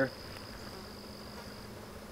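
Flies buzzing faintly around maggot-infested rotting meat, with a steady high-pitched insect call that fades out near the end.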